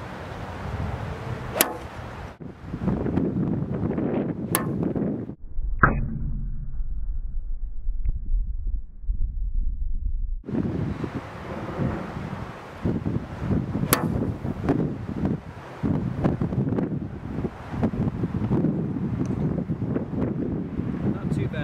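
Wind buffeting the microphone, broken by a few sharp clicks of an 8 iron striking golf balls off turf: about one and a half seconds in, about four and a half seconds in, and about fourteen seconds in. For about five seconds in the middle the wind noise drops to a low rumble.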